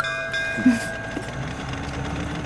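A bell-like chime rings out and fades, several tones sounding together over a faint steady background.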